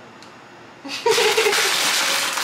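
A short laugh, then a steady rustle of a plastic bag being handled, starting about a second in.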